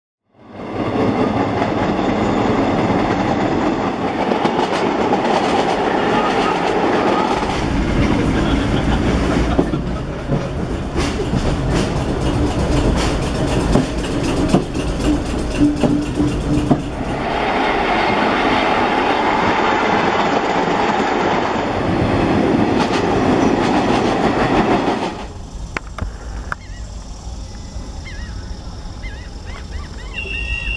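Vintage 1920s subway train of BMT Standard and D-type Triplex cars passing close by, a loud rushing rumble with the wheels clattering over rail joints. The noise drops off sharply about 25 seconds in.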